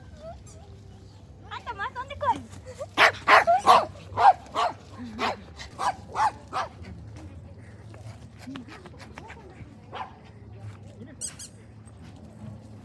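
A dog barking: a quick string of about nine sharp barks, starting about three seconds in and lasting some three and a half seconds.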